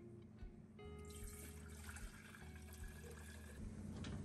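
Water pouring from a filter pitcher into a stainless steel jug, a faint splashing that starts about a second in and stops shortly before the end, over soft background music.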